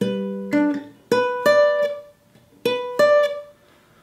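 Steel-string acoustic guitar fingerpicked through the G chord of the loop, a barre shape at the tenth fret. It is about six separate plucked notes, each left to ring, ending on a two-note rising figure played twice.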